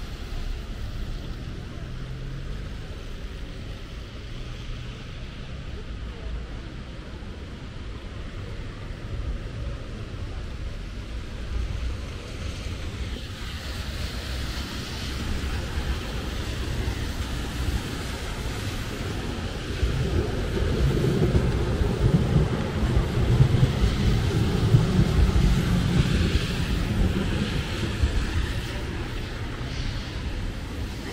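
Wet city street ambience: car traffic and tyres on rain-soaked asphalt with a low rumble of wind on the microphone, a car passing close at the start. Passers-by talking can be heard, and the noise grows louder about two-thirds of the way through.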